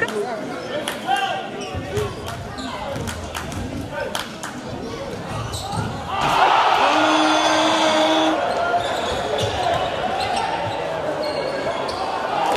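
Basketball dribbling and bouncing on a hardwood gym floor, heard as short knocks over the murmur of a crowd. About halfway through, as a dunk goes in, the crowd noise swells and stays louder.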